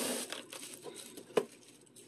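Thin plastic grocery bag rustling and crinkling as it is handled, fading away, with one sharp click about one and a half seconds in.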